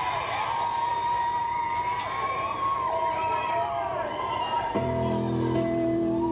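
A radio broadcast playing through the Aiwa TPR-950 boombox's speaker: a crowd cheering and whooping, then about five seconds in, a song starts with sustained chords.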